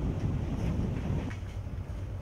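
Low rumble of wind buffeting the microphone outdoors, easing off about a second into the sound.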